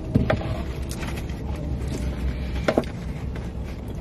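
Steady low rumble inside a parked car's cabin from its idling engine and running air conditioning, with a few short clicks from eating or handling food packaging.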